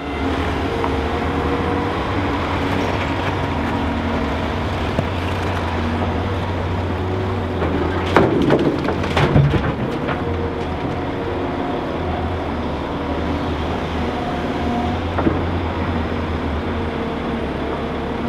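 Diesel engines of a Liebherr R950 SME crawler excavator and a Volvo articulated dump truck running steadily with a low drone. About eight seconds in, a bucketload of soil and stones drops into the dumper's steel bed with a rattle and a few sharp knocks.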